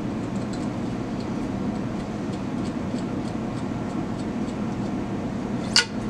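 A spoke nipple being threaded onto a spoke through a bicycle rim by hand, faint light ticks of metal parts over a steady low room hum, with one sharp click near the end.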